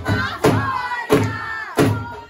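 A group of women chanting loudly together in unison, their calls falling in pitch, with sharp rhythmic hand claps about every two-thirds of a second.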